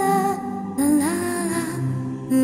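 A woman humming a wordless melody over a slow pop ballad backing track, her held notes sliding up in pitch about a second in.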